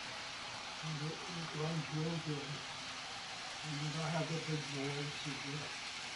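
A man's voice speaking quietly in two short stretches, the words unclear, over a steady hiss.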